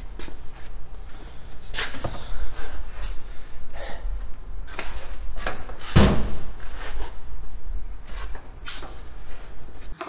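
Irregular knocks and clatter, with the heaviest thump about six seconds in, over a low rumble.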